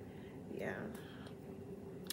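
A single quiet, half-whispered "yeah" from a woman, otherwise low room tone.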